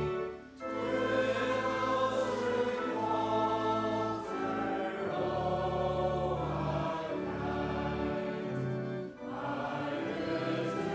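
A congregation singing a slow hymn verse in unison over steady, held accompaniment chords, with short breaks for breath between lines just after the start and near the end.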